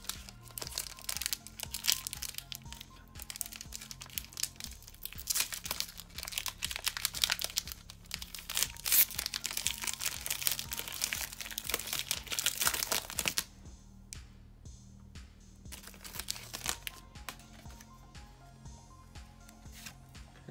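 Foil wrapper of a Pokémon booster pack crinkling and tearing as it is ripped open and the cards are pulled out: dense crackling that stops about thirteen seconds in. Soft background music plays underneath.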